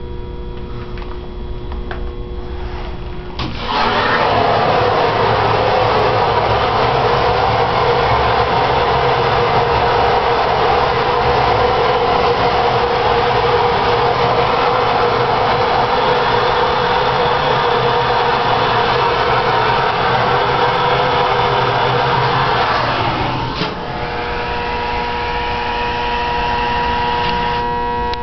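Hydraulic elevator pump unit cutting in abruptly about three and a half seconds in and running steadily, a dense motor-and-pump hum with a whine over it. Near the end, after a click, the sound changes to a somewhat quieter, more tonal hum.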